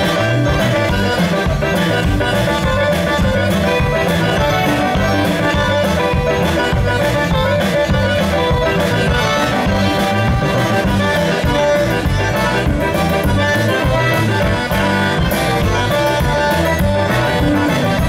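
Live Louisiana band playing an instrumental passage: accordion leading over electric guitar, bass, keyboard and drums, with a steady beat.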